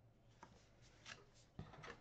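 Near silence, with a few faint rustles and light taps of cardstock being handled as a folded, taped flap is pressed into place.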